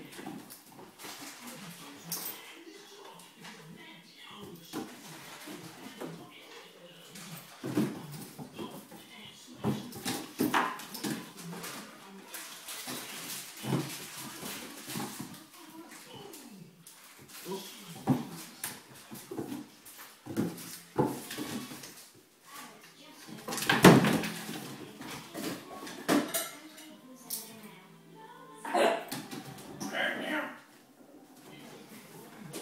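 A Labrador puppy growling and yapping in rough play with a cat, in irregular short bursts with scuffling on the floor, loudest a little past the middle.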